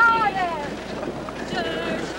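Several voices chanting and calling out in a group dance, opening with a long wavering call that rises and falls; a rushing noise fills the gap between the voices.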